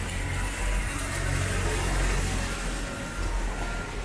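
A small truck's engine running as it passes close by, with tyre hiss from the wet road. The rumble is loudest about one to two seconds in, then fades.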